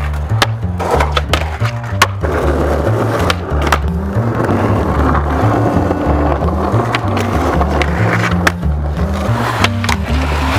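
Skateboard wheels rolling on concrete and asphalt, with sharp clacks of the board's tail pops and landings, several in the first two seconds and one near the end. Under it runs a hip-hop beat with a deep, stepping bass line.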